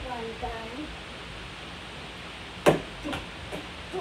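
A child's voice briefly at the start, then a single sharp knock about two and a half seconds in, the loudest sound, followed by two fainter knocks.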